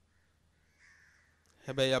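A crow caws faintly once, about a second in. A man's voice starts speaking near the end.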